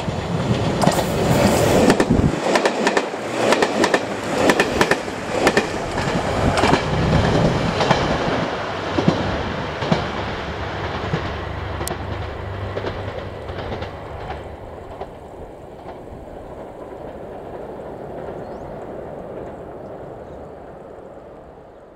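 JR Shikoku 2700 series diesel railcar passing through the station at speed: rapid clatter of its wheels over the rail joints with the low drone of its diesel engines. Loudest in the first few seconds, then fading away after about fourteen seconds.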